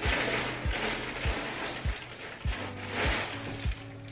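Plastic packaging rustling and crinkling as a bagged dress is pulled out and handled. Under it runs background music with a steady low beat, about three beats every two seconds.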